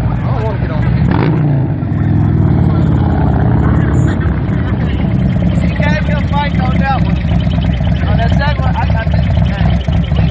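Harley-Davidson bagger V-twin engine running loud and low, rising in pitch about a second in, with men's voices over it in the second half.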